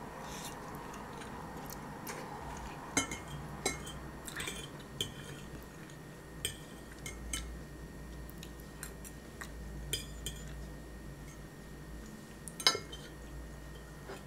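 Fork clinking and scraping on a plate while spaghetti and sausage are eaten, with chewing between. The clicks come irregularly, and the sharpest clink comes near the end.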